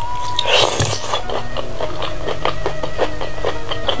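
Close-miked eating: a bite into a piece of chicken in green chilli sambal with petai beans about half a second in, then chewing with many quick wet mouth clicks and smacks. Steady background music plays underneath.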